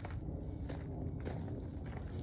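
Footsteps of a person walking: four faint, evenly spaced steps, about one every 0.6 seconds, over a low steady rumble.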